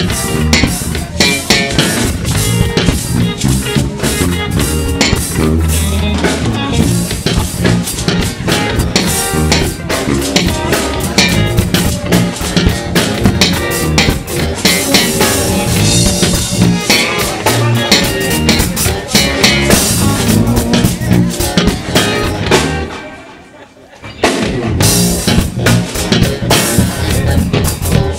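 Live band playing a funk-flavoured tune, driven by a drum kit with guitar. About 23 seconds in the whole band falls away for roughly a second, then comes back in together.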